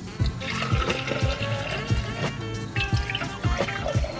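Background music with a steady beat, over coffee being poured from a carafe into a glass mason jar.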